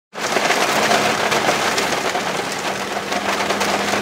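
Heavy rain falling on a car's windscreen: a dense, steady patter of countless drops, with a faint low steady hum beneath it.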